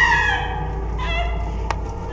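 A high, wailing scream that peaks at the start and falls away within half a second, followed by a fainter cry about a second in, over a steady low drone.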